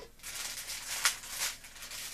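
Thin plastic wrapping rustling and crinkling as a vinyl figure is pulled out of its can and unwrapped by hand, with a sharper crackle about a second in.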